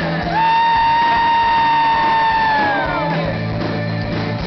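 A male lead singer belts one long, high held note, scooping up into it and falling away after about two and a half seconds, over a live rock band with guitars and drums.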